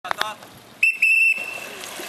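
A whistle blown in two short, loud blasts about a second in, the signal that starts a kayak race. Brief shouts come just before it.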